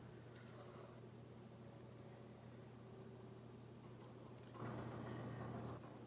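Quiet room tone with a steady low hum. About four and a half seconds in, a person breathes out hard through the mouth for about a second, huffing around a mouthful of hot soup that has burnt her tongue.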